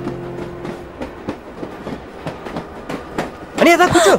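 Passenger train carriage running, with irregular clicking and rattling from the wheels and coach. A loud voice breaks in near the end.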